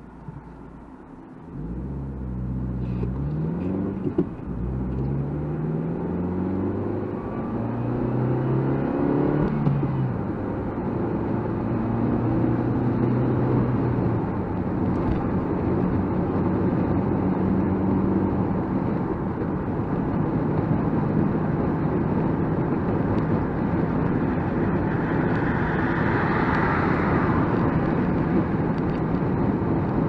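Nissan Micra K12's engine, heard from inside the cabin, pulling away and accelerating through the gears. The engine note climbs and drops back about 4 and 10 seconds in as gears change, then settles into a steady cruise over tyre and road noise.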